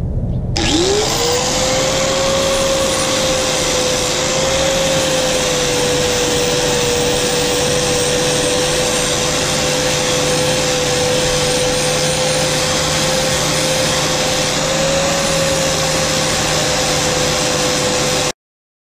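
Angle grinder spinning up about half a second in, then running at a steady pitch while its flap disc grinds the rusty top of a steel railway rail offcut.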